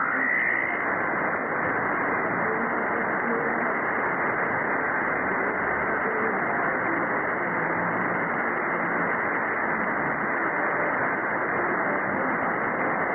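Shortwave receiver audio from the 4775 kHz band through a narrow lower-sideband filter: steady static hiss with a weak, unidentified station faintly buried in it. A rising whistle ends about half a second in.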